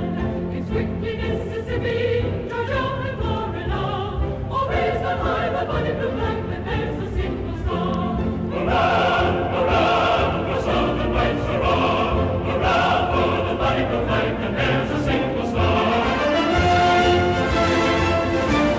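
A choir singing a slow song in a classical style, with orchestral accompaniment.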